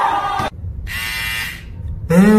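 A loud voice cuts off sharply about half a second in, and a quieter low buzz follows.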